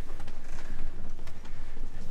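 Footsteps of several people walking, a scatter of light irregular steps over a steady low rumble of handheld-camera movement.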